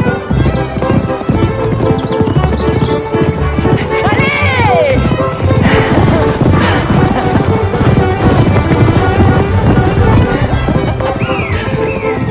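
Two horses galloping on turf, a dense rapid drumming of hoofbeats, with a horse whinnying about four seconds in and again near the end. Background music plays underneath.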